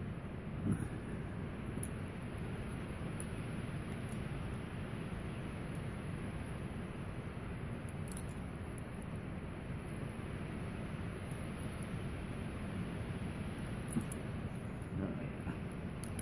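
Steady low background hum with a few faint clicks as a hand-held bicycle chain breaker tool is worked against the chain to push out a pin.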